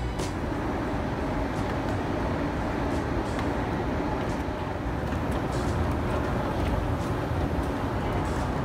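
Escalator running with a steady mechanical rumble, heard while riding down it, with a few faint clicks.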